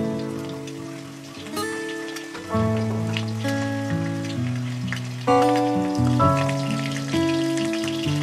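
Background music of held chords that change every second or so, over a steady crackling sizzle of potato pieces frying in oil in a steel wok.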